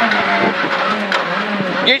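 Renault Clio R3C rally car's four-cylinder engine heard from inside the cabin, running hard through a stage with its pitch holding fairly steady, with small rises and dips, over road and cabin noise.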